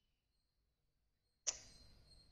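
Near silence, broken about one and a half seconds in by a single short click that trails off into a faint hiss.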